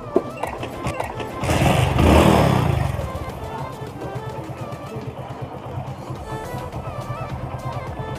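A motorcycle engine is started with a sharp click near the start and a loud surge about a second and a half in, then settles into an even idle. Background music plays throughout.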